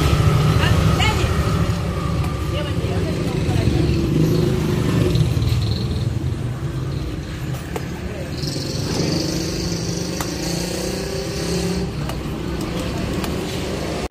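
Steady low rumble of road traffic, with voices in the background. A high hiss joins about eight seconds in and stops about four seconds later.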